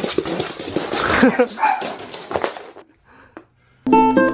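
Corgi puppy barking at a cat, with a man laughing about two seconds in. The sounds stop before three seconds, and ukulele music starts just before the end.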